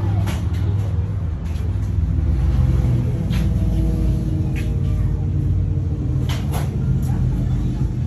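Steady low engine rumble, with background voices and a few sharp knocks.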